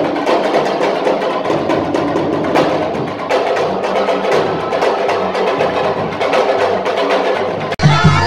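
Live drumming on traditional Senegalese sabar drums: a fast, dense stream of sharp drum strokes played for dancing. It cuts off abruptly just before the end.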